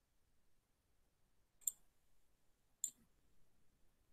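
Two sharp computer mouse clicks about a second apart, against near silence.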